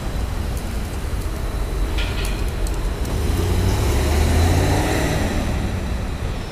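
A car driving past on the street, its engine and tyre noise swelling to loudest about four and a half seconds in, then fading.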